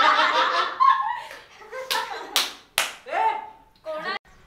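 A group laughing and talking over one another, then three sharp hand claps about two seconds in, the loudest sounds here.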